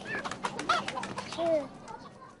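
Domestic chickens clucking: a few short, separate calls with light scuffs and knocks between them.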